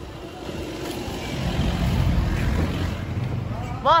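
Low rumble of a vehicle passing close by, building to its loudest around the middle and easing off near the end.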